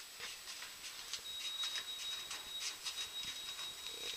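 Faint rustling and light clicks of a handheld camera being carried into a lift. A thin, steady high-pitched tone starts about a second in.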